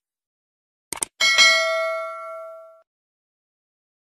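Two quick mouse-click sound effects about a second in, then a bell-like notification ding that rings with several tones and fades out over about a second and a half: the sound effect of a subscribe-button and notification-bell animation.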